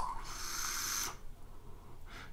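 A person taking a hit from an electronic cigarette and blowing out the vapour: one breathy hiss lasting about a second, then faint.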